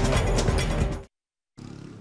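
A TV news program's theme music, cutting off abruptly about a second in. After a brief silence, faint street traffic noise.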